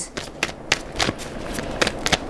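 A tarot deck being shuffled by hand: an irregular run of soft card slaps and rustling as the cards are split and passed between the hands.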